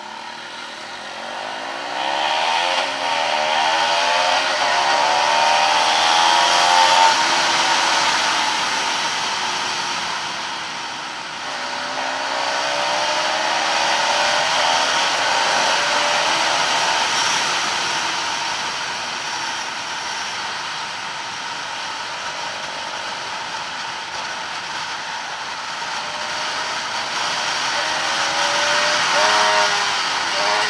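Bajaj Pulsar NS 200 single-cylinder engine accelerating away from a standstill, its pitch climbing and dropping back at each upshift, under a rush of wind noise. It eases off about ten seconds in, then pulls up through the gears again.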